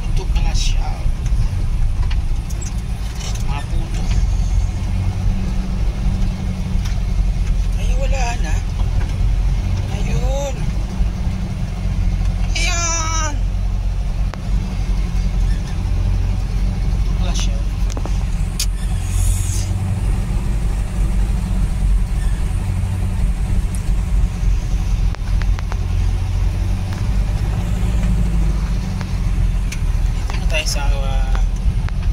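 Steady low engine and road rumble inside a moving vehicle's cabin. A few brief wavering pitched sounds come through, the clearest about thirteen seconds in.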